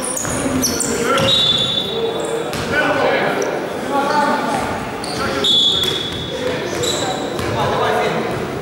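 Basketball game in an echoing gym: a ball bouncing on the court floor, sneakers squeaking in short, high chirps several times, and players' voices.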